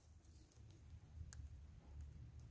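Near silence: a faint low rumble with two faint ticks, about half a second in and again just past a second.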